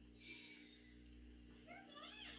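Near silence: faint room hum, with a soft brief hiss about a quarter second in and a faint rising-and-falling call near the end.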